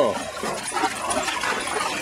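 A dog splashing through a shallow rocky stream and climbing out onto the rocks, over the steady rush of the water.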